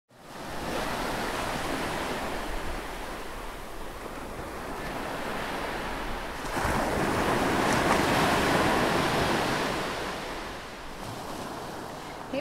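A steady rushing noise like surf washing in. It swells about halfway through and eases off near the end.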